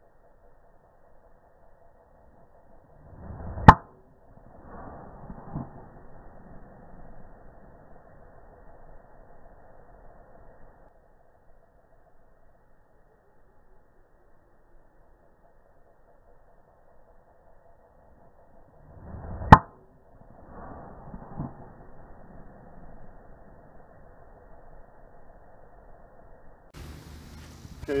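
Two full golf swings with a driver, about sixteen seconds apart. Each is a brief whoosh of the club building into a sharp crack as the clubhead strikes the ball, followed by a few seconds of faint noise.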